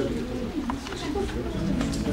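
Indistinct voices of a group of people talking at once, with music playing in the background.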